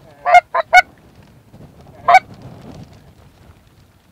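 Goose honks: three short, loud honks in quick succession in the first second, then one more about two seconds in.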